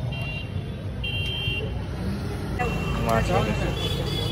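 Busy street ambience: a steady low rumble of traffic with two short, high horn toots in the first second and a half, and voices near the end.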